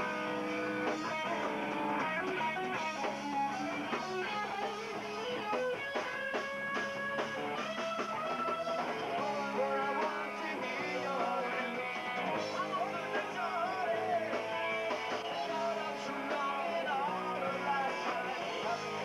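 Hardcore band playing live: electric guitars, bass and drums, heard from within the crowd in a small room.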